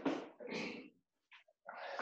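Several short breathy bursts like hard panting, each under half a second, separated by dead-silent gaps.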